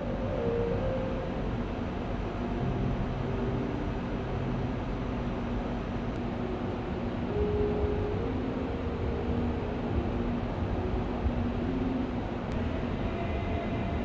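Steady low rumble of a large hall with slow, held tones that shift in pitch every second or two, the ambient soundtrack of an immersive projection exhibition.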